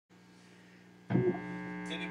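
Mains hum from an idling EL34-powered 50 W tube guitar amp head. About a second in there is a sudden brief thump, and after it the hum is louder with a buzzier edge.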